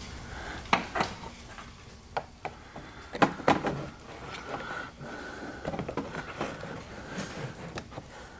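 Plastic underbody panel at the rear of a car being pushed up and clipped into place by hand: a series of irregular sharp plastic clicks and knocks, the loudest about three seconds in.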